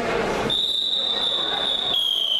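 A long, shrill, steady whistle blast starting about half a second in and dropping slightly in pitch near the end, over the murmur of a crowded sports hall.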